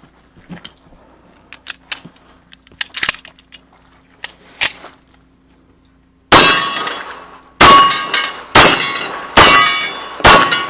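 Four .45 ACP pistol shots from a 1911, about a second apart, starting about six seconds in, each trailing off over most of a second. Before them, light metallic clicks and knocks from the pistol being handled.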